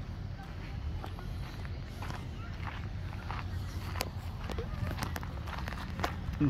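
Footsteps on a gravel path, a scatter of short crunching steps, over a steady low rumble on the microphone.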